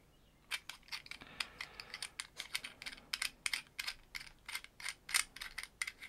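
Quick, irregular small clicks and rattles of hard plastic parts being handled, as a shotgun microphone's small converter module is worked loose in the hands. The clicks start about half a second in and come several a second.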